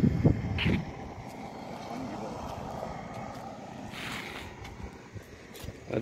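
Wind buffeting a phone microphone in short gusts during the first second, then a faint, steady outdoor rumble.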